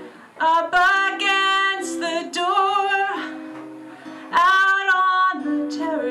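A woman singing, with two long held notes, to her own acoustic guitar accompaniment.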